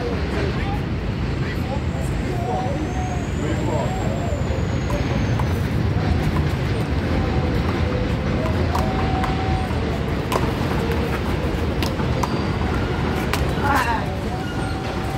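A steady low rumble of city traffic with indistinct voices, broken in the second half by a few sharp smacks of a handball being struck and hitting the wall.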